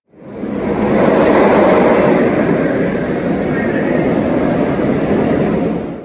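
A roller coaster train rumbling along its track, a steady noisy roar that swells over the first second, holds, and fades out just before the end.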